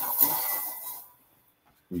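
Microphone being handled and rubbed as it is hooked up: a rough, scraping rustle for about a second that then drops away to silence.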